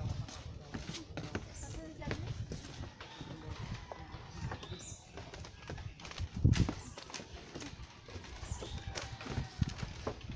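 Footsteps on a wooden plank boardwalk, an irregular series of hollow knocks and thumps. The heaviest thump comes about six and a half seconds in.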